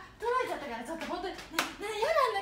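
A young woman's voice, laughing and calling out, with a single sharp smack of hands about one and a half seconds in.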